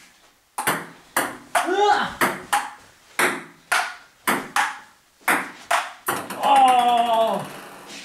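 Table tennis rally: the celluloid ball clicking off paddles and the table about twice a second. A voice calls out briefly about two seconds in and again, longer and louder, near the end.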